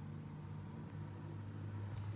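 Steady low machine hum of running equipment inside a motorhome, one even pitch with faint overtones and no change.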